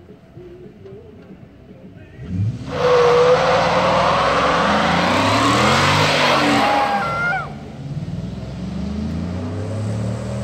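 Ford F-150 pickup doing a burnout: the engine revs up about two seconds in, then the spinning rear tire screeches loudly on the pavement for about four and a half seconds and cuts off suddenly. The engine keeps running and revving up and down afterwards.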